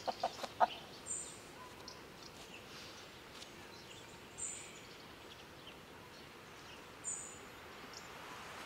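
A bird calls faintly over quiet open-air background, three short high-pitched chirps about three seconds apart.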